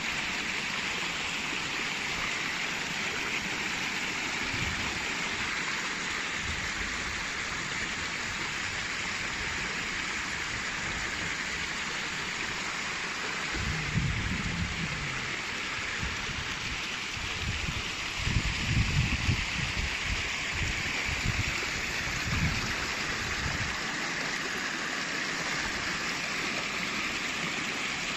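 Small waterfall and cascading mountain stream rushing steadily over rock. A few low thuds come through around the middle.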